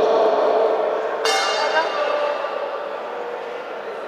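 Boxing ring bell struck once about a second in, its ring fading over the following second.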